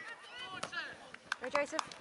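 A quick, irregular run of sharp knocks among spectators' voices and laughter.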